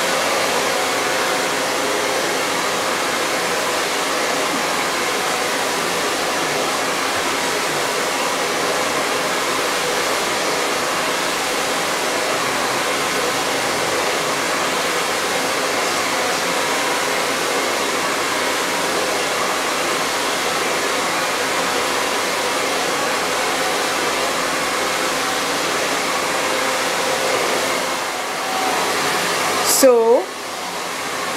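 Silverbird handheld blow dryer running at its highest fan speed on the warm setting: a steady rush of air with a faint hum, dipping briefly near the end.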